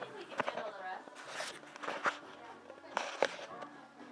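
Indistinct voices with a few sharp knocks and bumps, the loudest about three seconds in.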